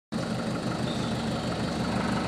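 Engine of a light passenger truck idling steadily, an even low rumble.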